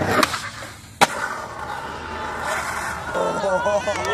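Skateboard on concrete: a light pop just after the start, then one loud slap about a second in as the board lands, most likely at the bottom of a stair set, followed by the wheels rolling on pavement. People's voices come in near the end.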